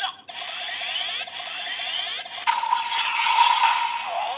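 Electronic finisher standby sound from the DX Gashacon Sparrow toy weapon's small speaker: a buzzing loop of quick repeated sweeps, with a steady higher tone joining about two and a half seconds in and holding.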